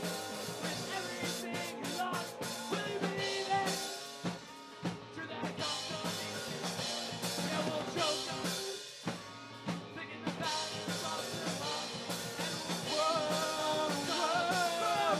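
Rock band playing live, with drum kit, guitar and bass. The music thins out briefly twice, and singing comes in near the end.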